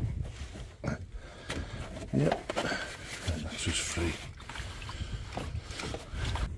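Hand handling noise on a van's plastic coolant expansion tank and its hose clips: a few sharp plastic clicks and knocks over rustling as the clips and pipework are worked loose.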